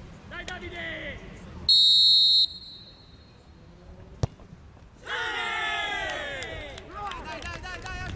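A referee's whistle blows one short steady blast, the loudest sound here. About two seconds later comes a single sharp thud as a penalty kick strikes the football, and then several voices shout and cheer in reaction.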